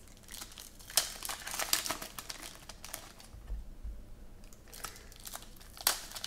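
Foil trading-card pack wrapper crinkling and crackling in irregular bursts as hands handle and tear it open, with the sharpest crackles about a second in and just before the end.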